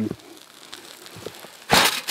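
A short, hard puff of breath near the end, blowing out the flame of an Esbit solid-fuel tablet stove.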